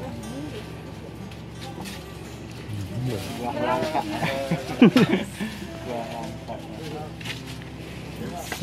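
People's voices talking nearby, with a louder burst of voice about five seconds in, over steady background music.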